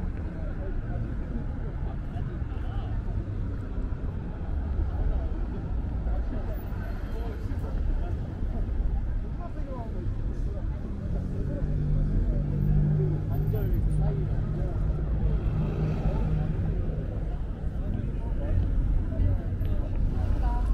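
Busy city street ambience: passers-by talking indistinctly over a steady rumble of road traffic. A vehicle engine's hum rises above the traffic for several seconds in the middle.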